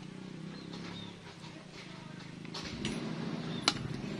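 Quiet workshop background with a steady low hum and a few faint chirps. Toward the end comes handling noise of small metal parts, then one sharp metallic click as the oil pump gear is pushed into place on the scooter engine's crankcase.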